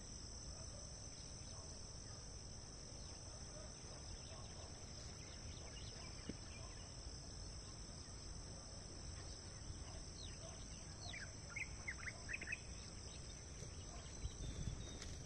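Faint, steady high-pitched chorus of insects, over a low rumble. From about ten seconds in, a quick run of short falling chirps from a bird.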